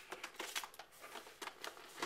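Faint crinkling and small clicks of a clear plastic toy package being handled, as the action figure's packaging is opened.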